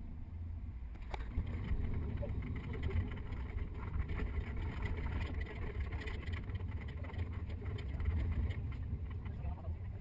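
Steady low rumble of a double-decker tour bus driving through city traffic, heard from its upper deck, growing a little louder about a second in.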